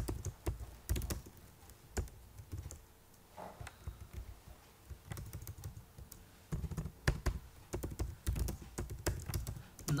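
Typing on a computer keyboard: keys clicking in irregular runs, with a short lull in the middle.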